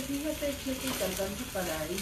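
An egg frying in a small frying pan with a steady sizzle as a spatula turns it over, under a soft voice.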